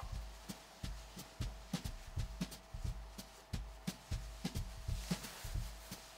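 Hands folding and pressing a pocket square: irregular soft ticks and dull thumps, a few a second.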